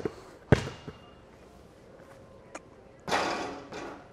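A basketball bounced once on the court floor about half a second in: a sharp slap that rings through the large hall, followed by a fainter tap. Near the end comes a short burst of rushing noise as the free throw goes up.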